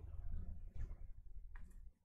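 Faint handling noise from a stack of baseball trading cards, with a few soft clicks as card edges tap and slide against each other.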